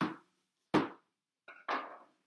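Cardboard shipping box knocked against a wooden table as it is turned and set down: three sharp thumps, the loudest a little before halfway.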